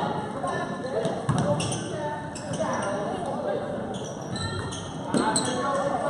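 Basketball dribbled and bouncing on a gym floor during play, a string of short thuds, among voices of players and spectators in a gymnasium.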